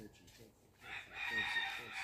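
A rooster crowing once, a loud drawn-out call that starts just under a second in and lasts about a second and a half.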